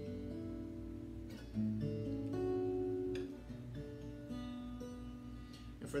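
Acoustic guitar fingerpicked through double-stop voicings of a chord progression in B minor: a bass note on the low E string, then notes on the G and B strings, skipping the A string. The notes ring on over one another, with a fresh pluck about every second.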